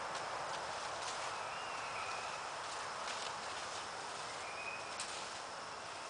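A few scattered, sharp clicks and knocks as a tactical hanger is handled and hung on a tree branch, over a steady outdoor hiss, with a faint thin whistle twice.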